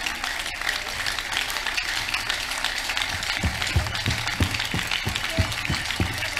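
A large outdoor crowd applauding. About halfway through, a steady low drum beat joins in at roughly three beats a second.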